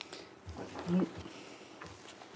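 A brief, faint voiced sound about a second in, like a short murmur, with papers rustling.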